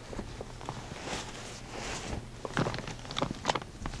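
Bed sheets and a hospital gown rustling as a patient mannequin is rolled onto its side in a hospital bed, in a few short bursts of cloth noise and handling.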